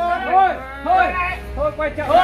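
Men's voices talking in short phrases while working together.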